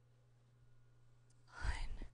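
Quiet room tone with a steady low hum, then a brief whispered or softly spoken word near the end.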